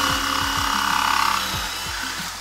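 Cordless drill driving a hole saw through a computer case side panel: a steady grinding whir of the saw cutting, loudest for the first second and a half, then easing off.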